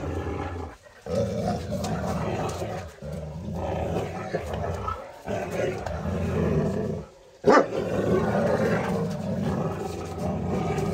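A large animal growling deeply in long, drawn-out phrases of about two seconds, broken by short pauses for breath. A sudden loud burst comes about seven and a half seconds in.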